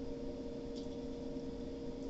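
Quiet room tone: a steady faint hum with a faint brief rustle a little under a second in.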